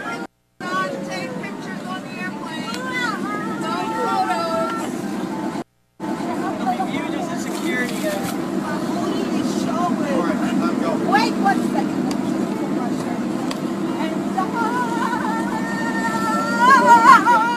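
Phone recording inside an airliner cabin: a steady cabin hum under people talking. Near the end a voice holds long, wavering notes. The sound cuts out briefly twice.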